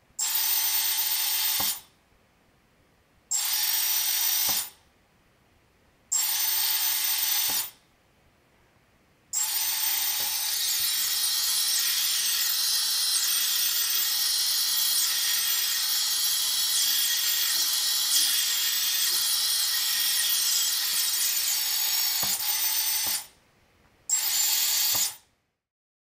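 Quadcopter brushless motors on ESCs flashed with BLHeli and using Oneshot, whining in three short runs of about a second and a half each, then a long run of about fourteen seconds whose pitch rises and falls with the throttle, then one last short run near the end. Each time the throttle is cut the motors stop almost at once, the quick stop that BLHeli with Oneshot gives.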